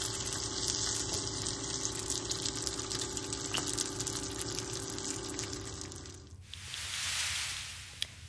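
Turkey bacon sizzling and crackling in a frying pan, a steady crackle that stops about six seconds in and gives way to a softer, smoother hiss.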